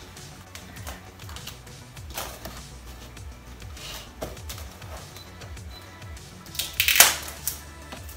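Background music, with plastic cling film crinkling and rustling as it is stretched over a stainless steel mixing bowl. The film gives scattered short crackles, and the loudest comes about seven seconds in.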